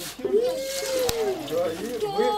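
A single drawn-out vocal sound from one person, rising and then falling in pitch over about a second, with a short click partway through.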